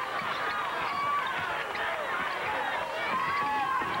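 Arena crowd noise at a basketball game, with many short, high squeaks of basketball shoes on the hardwood court as the players run.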